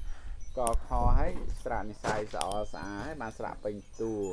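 Speech: voices reciting a Khmer lesson aloud, with a few brief, sharp high clinks among the words.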